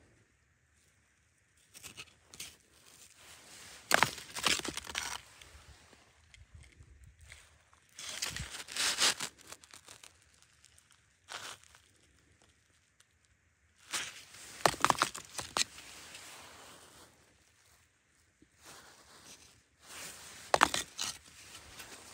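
Loose sandstone rubble crunching and scraping in irregular bursts a few seconds apart, with sharp clicks of stone on stone.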